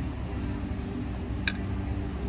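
A single sharp clink of metal cutlery against a ceramic plate about one and a half seconds in, over a steady low background rumble.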